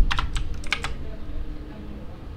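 Computer keyboard keystrokes, a quick run of about half a dozen presses in the first second that then tails off, as a line of code is deleted.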